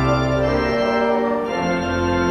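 Organ playing slow, sustained chords over a deep bass, the chord changing twice.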